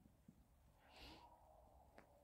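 Near silence, with one faint, short breathy exhale about a second in.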